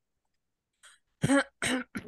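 A person clearing their throat: two short, loud throat-clears in quick succession, about a second in, after a silence.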